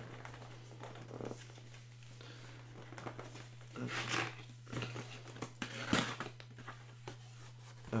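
Adhesive tape being peeled off a cardboard box, heard as several short tearing and crinkling bursts, the loudest about four and six seconds in.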